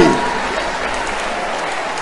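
A congregation applauding, an even, steady clapping.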